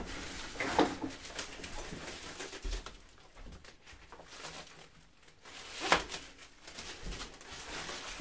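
Bubble wrap crinkling and rustling as a large bubble-wrapped parcel is carried and handled, with a louder burst of crinkling about six seconds in.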